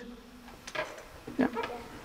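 Quiet room with a short spoken "yeah" about a second and a half in.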